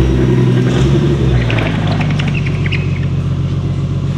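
Nissan S13 drift car's engine idling as it creeps slowly onto a lift, with a steady low note that settles a little lower about a second in.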